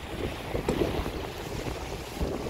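Wind buffeting the microphone on a sailing yacht with the sea washing past, while the boat turns through a tack; the wind noise grows louder over the first half second.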